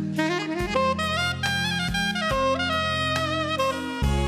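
Slow instrumental background music: a saxophone melody with notes that slide and bend, over held bass notes and a few soft low beats.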